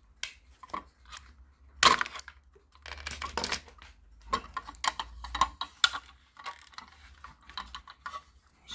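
Light plastic clicks and scrapes of a toy car's friction-motor gearbox being handled and opened by hand, its plastic housing cover coming off the gears and flywheel.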